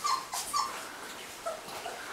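Three-week-old golden retriever puppies whimpering while one is handled: several short, high-pitched squeaks in the first half second, then a couple of fainter ones later.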